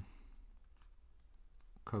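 Faint, scattered clicks and taps of a stylus writing on a tablet's glass screen.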